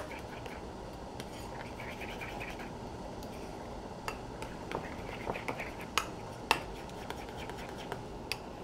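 A spoon stirring a thick crème fraîche and horseradish mix in a small ceramic bowl: soft scraping, then a few sharp clicks of the spoon against the bowl in the second half.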